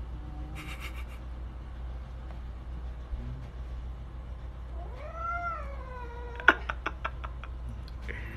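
Domestic cat giving one long yowl at a furry fake creature, rising in pitch, then falling and held: a wary, defensive call. It is followed by a quick run of about six sharp clicks, the first the loudest.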